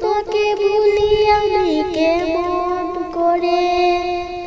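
A woman singing a Bengali song in a high voice, holding long notes on a vowel with wavering ornamented turns between them.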